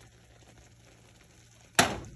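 A single sharp knock near the end, a hard kitchen object striking the pan or stovetop, over a faint steady hiss.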